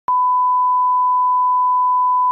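Test tone played with colour bars: a single steady beep at one pitch, held unbroken, starting with a click a moment in.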